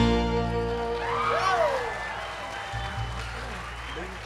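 A bluegrass band's final chord ringing out and fading, as the audience applauds and a voice in the crowd cheers with a rising-and-falling call about a second in.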